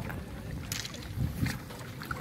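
Water splashing and sloshing against a seawall, with a couple of short splashes, as a tarpon is held in the water alongside. Wind rumbles on the microphone underneath.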